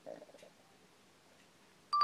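A short electronic beep right at the very end, the stop-recording tone as the video ends. Before it, the room is nearly silent apart from a faint brief sound at the start.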